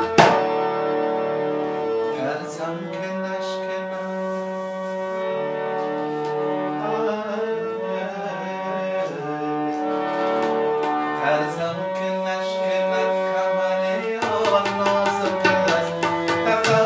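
Harmonium playing a melody in long held notes, with only a few scattered tabla strokes after one strong stroke at the start; near the end the tabla comes back in with quick, dense strokes.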